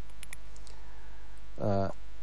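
A pause in a man's speech, filled by a steady low electrical hum and a few faint clicks in the first second, broken near the end by one short spoken syllable.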